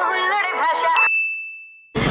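Music fading out, then about halfway through a single high-pitched ding that starts suddenly and rings on as one steady tone until it cuts off near the end.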